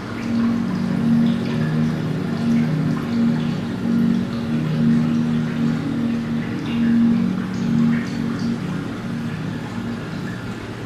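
Slow background music of low, alternating notes, starting at the outset and fading near the end, over water trickling and dripping from an inlet pipe into an aquarium tank, with a steady low hum underneath.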